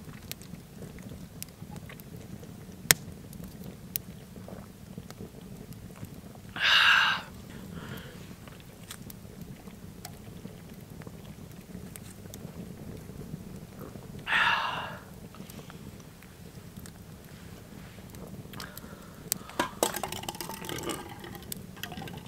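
A man chugging a can of beer, with two loud breathy exhales between swigs, about 7 and 14 seconds in. Scattered sharp crackles from a wood fire burning in a metal fire pit run under it.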